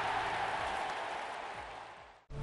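The noisy whoosh that ends an electronic intro jingle, fading steadily away to nothing.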